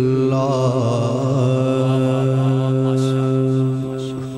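A man's voice singing a naat unaccompanied, drawing out one long note: it wavers in ornaments at first, then holds steady and fades near the end.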